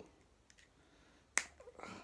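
A single sharp plastic click, a little over halfway through, as a Teenage Mutant Ninja Turtles 2012 action figure's head is snapped onto another figure's ball-joint neck, with faint handling of the figure around it.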